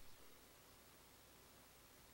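Near silence: the steady hiss of the recording, with a brief faint blip right at the start.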